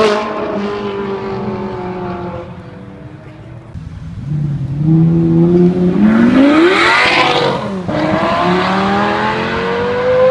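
A Ferrari 458 Italia's engine fading as it drives away, then a black Lamborghini accelerating hard: its engine note climbs to a loud peak about seven seconds in, drops sharply with an upshift, and climbs again.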